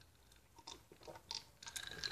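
Faint swallowing sounds of a man drinking from a glass: a few short gulps, more of them in the second half.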